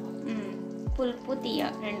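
Fish curry simmering in a pan on the stove, bubbling and sizzling softly, with background music playing over it.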